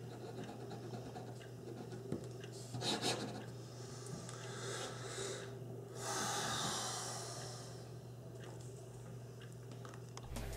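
Faint scratching of a Hero 9622 fountain pen's fine 0.5 mm nib on paper as a signature is written and underlined. There is a louder stroke about three seconds in and a longer rustle about six seconds in.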